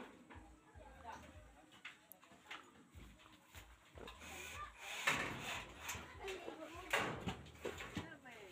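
Indistinct voices of people talking, with two brief louder noises about five and seven seconds in.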